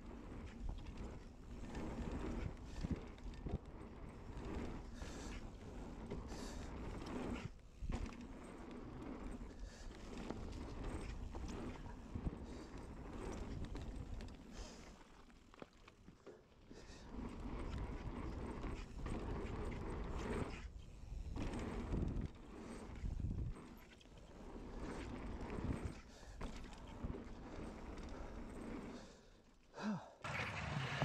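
Mountain bike riding a dirt pumptrack: tyres rolling on packed dirt, with frequent knocks and rattles from the bike over the bumps, dropping away briefly a few times.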